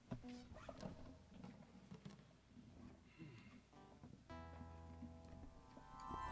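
Near silence in a small studio room: faint clicks and small string sounds from instruments being readied, with a faint held instrument note coming in about four seconds in.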